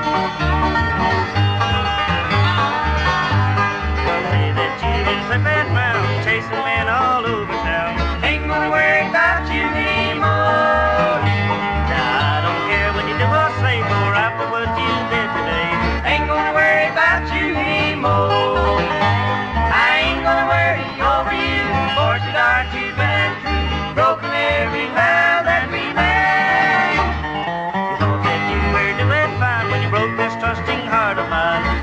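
Early-1960s bluegrass single playing from a 45 rpm record: an acoustic string band with a steady bass beat.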